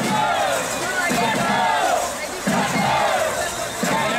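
Many voices shouting together in a rising-and-falling chant, repeated about every second and a quarter.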